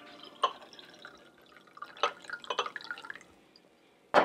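Liquid poured from a bottle into a small drinking glass: a short run of glugs and splashes a little past halfway, with a couple of light knocks of glass on glass or the counter before it.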